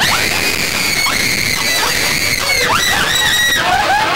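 A woman screaming: about three long, high-pitched screams in a row, each sweeping up in pitch at its start, then breaking off shortly before the end.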